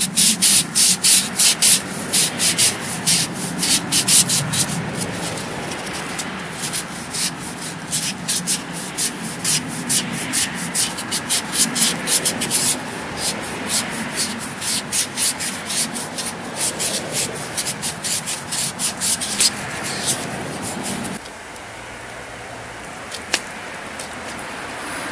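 Hand sanding a paper rocket motor tube with a sanding pad: quick back-and-forth rasping strokes, several a second, scuffing off the tube's glossy finish so epoxy will grip. The strokes stop a few seconds before the end.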